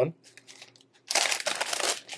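Lay's potato chip bags crinkling as they are handled and swung about, starting about a second in after a short pause.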